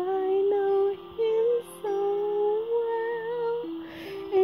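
A female voice singing a slow melody in long held notes, with no clear words, over soft sustained musical accompaniment.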